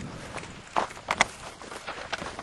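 Footsteps of someone walking across a rough grass paddock, a few uneven steps standing out about a second in.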